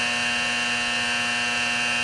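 Launch-control alarm in a Titan II missile launch control center sounding one steady buzzing tone, marking the engine-fire stage of a simulated launch sequence.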